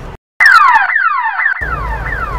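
Car alarm sounding, a rapid run of falling electronic whoops at about four a second, starting sharply just after a brief silence. A low rumble joins underneath near the end.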